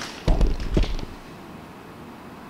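A few short knocks with a low thud in the first second, then quiet room tone.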